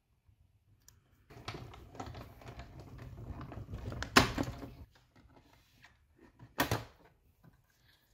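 A hand-cranked Stampin' Cut & Emboss die-cutting machine pulling its acrylic plates through the rollers, a rough continuous rumble for about three seconds. A sharp clack comes near the end of the pass, and a second hard knock of plastic comes a couple of seconds later.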